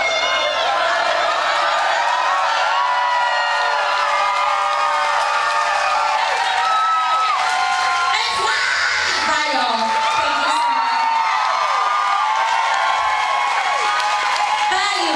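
Concert crowd cheering and whooping, many voices at once, with no band playing.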